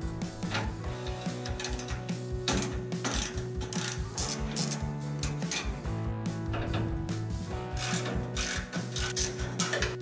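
Background music with a steady beat, over rapid clicking from a ratchet loosening the screws that hold a 1966 Mustang's grille.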